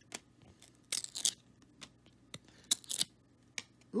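Trading cards being handled and slid against one another in the hand: a string of short flicks and swishes of cardstock, the longest about a second in and just before three seconds.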